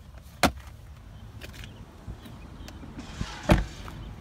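A sharp click about half a second in, then a car door shutting with a solid thud near the end: the rear door of a 2007 Lexus LS 460 being closed.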